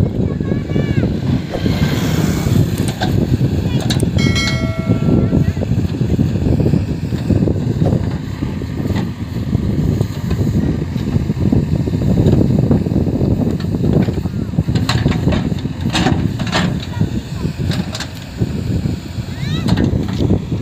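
JCB 3DX backhoe loader's four-cylinder diesel engine running steadily under load as the backhoe arm digs soil, with a few sharp knocks about three-quarters of the way through and a brief high tone about a quarter in.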